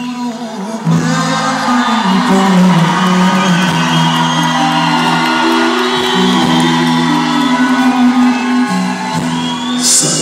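Live band music played loud through a large concert hall's sound system, the full band coming in about a second in and running steadily on.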